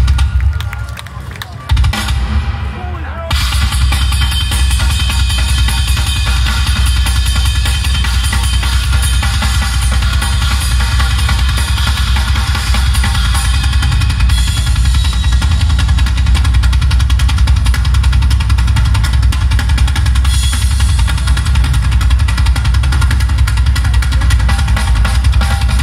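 Live rock band playing loud through a concert PA. There are two big hits near the start that ring out, then from about three seconds in the full band plays on steadily, with heavy drums and bass.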